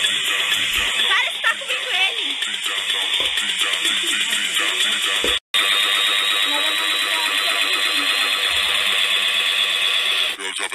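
Indistinct voices over background music, with a loud steady hiss in the upper range; the sound drops out for a split second about halfway through.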